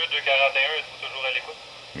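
Two-way radio voice transmission received by a handheld trunking scanner on an EDACS trunked talkgroup, heard through the scanner's speaker as thin, narrow-band speech over hiss. The voice stops about one and a half seconds in, leaving a steady hiss.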